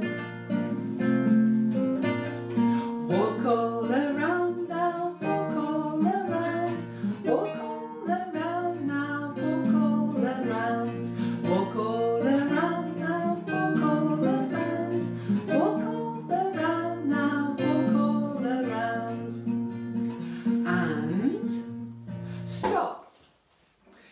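A woman singing a children's action song, accompanied by a strummed nylon-string classical guitar. Near the end the song and guitar stop abruptly, leaving about a second of near silence.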